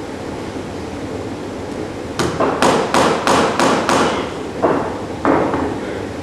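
Hammer striking a wooden board on a workbench: six quick, sharp blows about a third of a second apart, then two duller knocks.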